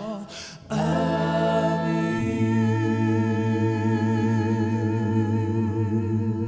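A worship team of men's and women's voices singing a cappella in harmony. After a short break about half a second in, they hold one long chord with vibrato, and the lowest note steps down about two seconds in.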